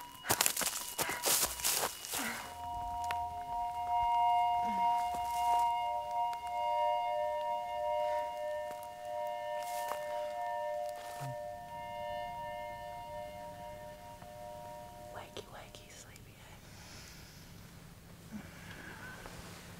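Footsteps crunching and snapping on dry leaf litter and twigs for about two seconds, then a film-score chord of held, steady tones that slowly fades away.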